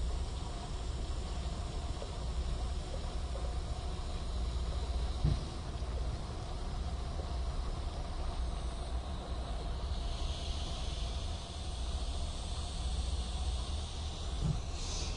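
Pressurized air blowing a foam cleaning plug through an emptied coax cable sheath, pushing out leftover fluid: a steady low rumble and hiss. There is a brief knock about five seconds in, and the hiss grows stronger from about ten seconds on.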